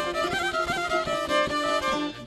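Bosnian izvorna folk instrumental break: a violin plays a stepping melody over quick, even strumming of šargijas.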